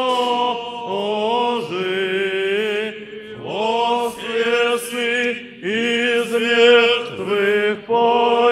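Choir singing Orthodox liturgical chant in sustained, gliding phrases, with two brief pauses for breath.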